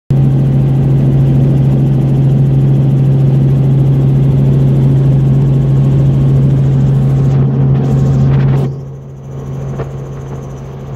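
Helicopter noise heard from aboard: a loud, steady drone with a strong low hum. The level drops sharply about nine seconds in.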